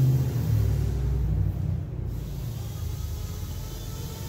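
Steady low rumble and hum of shop machinery in the background, which the uploader puts down to his prep man running a dual-action (DA) sander. It is a little louder in the first two seconds.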